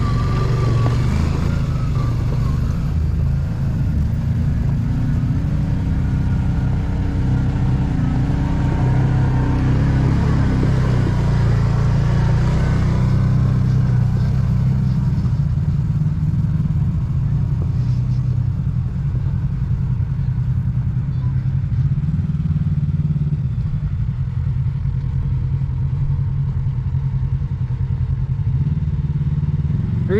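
Side-by-side UTV engines running in a steady low drone. One machine passes close in the first few seconds, and its engine pitch shifts as it drives on.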